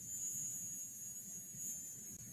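Faint room tone with a steady high-pitched hiss.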